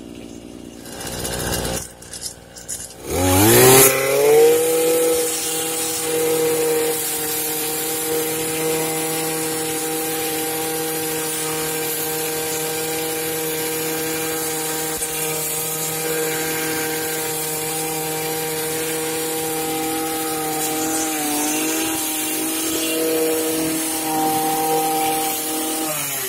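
Hi Tenci HBC-52 petrol brush cutter revving up from low speed about three seconds in. It then runs steadily at full throttle as its metal blade cuts through weeds, with a brief dip in engine speed about three-quarters of the way through.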